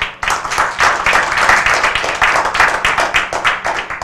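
Audience applauding: a dense run of hand claps that starts suddenly.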